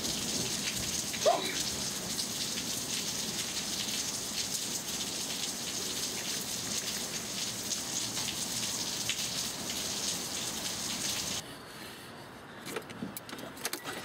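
A steady hiss like falling rain, with a brief chirp-like glide about a second in. It cuts off suddenly after about eleven seconds, leaving quieter sound with a few small clicks.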